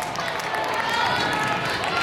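Several girls' voices chattering and calling out at once, overlapping, in a gymnasium.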